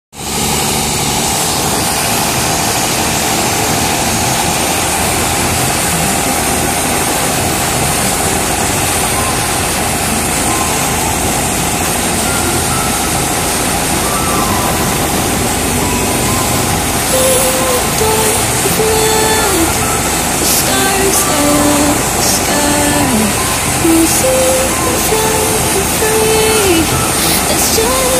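Turbocharged Mercedes-Benz boat engine running steadily at speed under load, an even, continuous drone. From a little past halfway, a stepped music melody plays over it.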